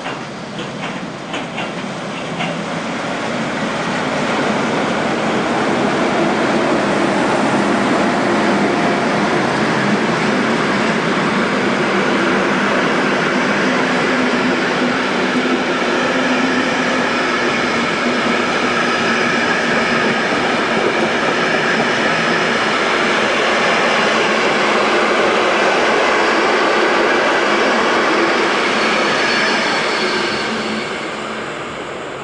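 Electric locomotive-hauled passenger train of stainless-steel coaches rolling past close by. Wheel clicks over rail joints come first, then a loud, steady rolling rumble with some ringing tones from the wheels as the coaches go by, dropping away at the very end as the train clears.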